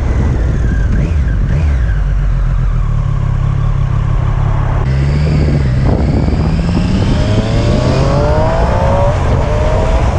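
Triumph Street Triple RS 765's three-cylinder engine under acceleration, with wind rushing over the rider's helmet microphone. The engine note changes sharply about five seconds in, then climbs steadily in pitch as the bike gathers speed.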